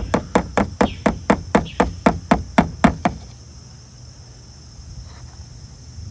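A spoon tapped quickly against a plastic cup, about a dozen sharp taps at roughly four a second, stopping about three seconds in, while cement is poured into a small plastic cup form. A steady high buzz of insects runs underneath.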